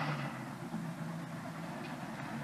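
A quiet, steady low hum with faint background noise; no clear event stands out.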